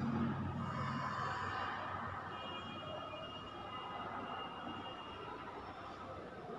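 Faint sound of a marker pen writing on a whiteboard, over low room noise.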